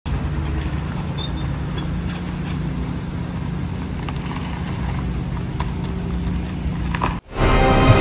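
Pickup truck engine idling steadily, a low rumble with a few light clicks, which stops abruptly about seven seconds in; theme music starts right after.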